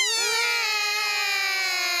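Young cartoon children crying together in one long wail that slowly falls in pitch.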